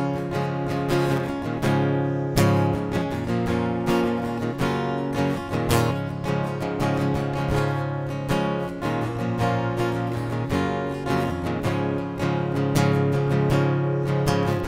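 Solo acoustic guitar strumming chords, with no voice: an instrumental passage between sung lines.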